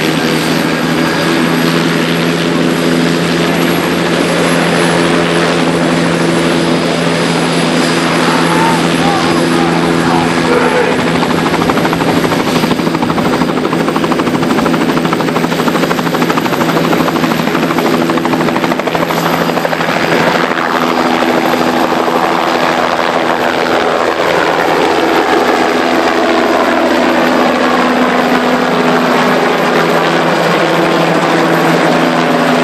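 Light two-bladed turbine helicopter running close by: a steady rotor hum with a thin high turbine whine above it. In the second half it lifts off and climbs away, and the sound turns rougher and more spread out.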